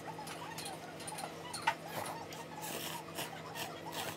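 Eating a bowl of ramen: wooden chopsticks clicking against the ceramic bowl, sharpest about a second and a half in, and noodles being stirred and lifted out of the broth with a short slurpy rush near the end. A steady low electrical hum runs underneath.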